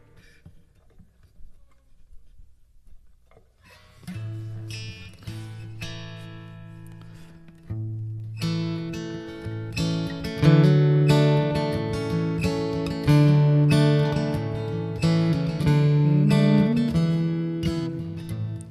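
A capo clipped onto an acoustic guitar's neck with a few faint clicks. About four seconds in, the capoed guitar starts being picked, and it plays fuller, louder chords from about eight seconds in.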